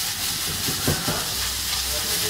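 Whole shell-on prawns (gambas) sizzling in hot fat in a frying pan, a steady hiss, with a few soft knocks about halfway through.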